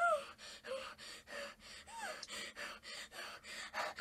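Faint gasping and heavy breathing of a frightened young girl, with a few short high vocal sounds, one about halfway through.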